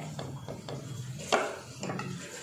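A few light knocks and clatters in a clay cooking pot as chopped tomatoes are tipped in. The sharpest knock comes about two-thirds of the way through.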